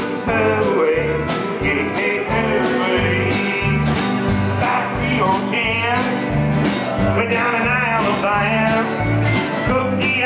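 Live country band playing an instrumental passage between sung verses: drum kit keeping a steady beat under electric bass, acoustic and electric guitars and pedal steel guitar, with sliding, bending lead notes.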